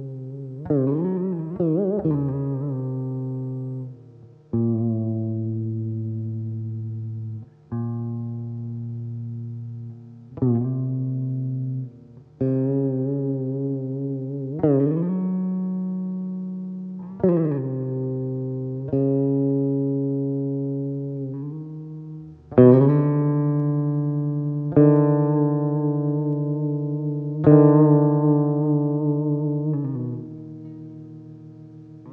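Saraswati veena played in Carnatic style: a new note is plucked every two to three seconds and each one rings on and fades, with the pitch wavering and sliding between notes. The strongest plucks come in the last third.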